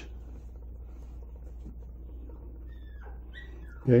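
A small dog whining briefly, two short falling whines about three seconds in, over a steady low hum.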